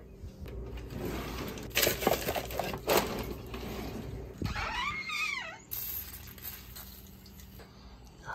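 Rummaging in a cabinet drawer: a few sharp knocks and rattles of items as a can is taken out, then a short wavering squeak about five seconds in.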